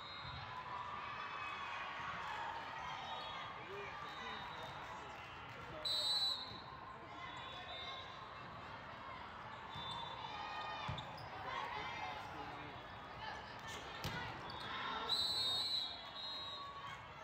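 Referee's whistle giving a short blast about six seconds in and again near the end, the signals that start and end a volleyball rally. Between them there are a few sharp slaps of the volleyball being hit, fainter whistles from other courts, and steady crowd and player chatter echoing in a large hall.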